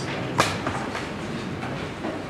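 A sharp click about half a second in, then a few fainter ticks and rustles over steady room noise: handling noise from things being moved about at a lectern.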